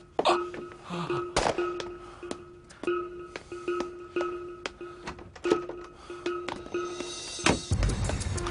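Tense background score: a single note pulsing in short repeats over sharp percussive ticks, with a heavy low hit near the end.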